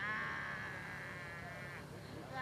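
A person's drawn-out, wavering vocal cry, high and trembling in pitch, lasting nearly two seconds.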